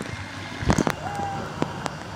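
Handling noise of a device sealed in a thick plastic waterproof pouch: a few soft knocks and rubs over a low haze of moving water.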